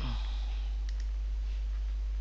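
A few faint computer mouse clicks over a steady low hum.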